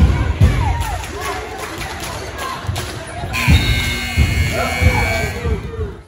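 Indoor basketball game: a basketball thudding on a hardwood gym floor and sneakers squeaking, over spectators talking. The sound drops away suddenly at the very end.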